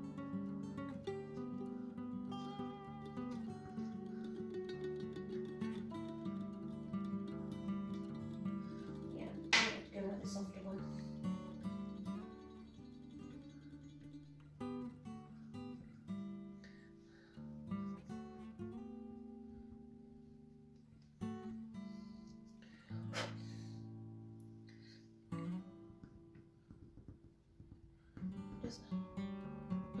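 Background acoustic guitar music, plucked and strummed, with two sharp clicks, one near the middle and one about two-thirds through.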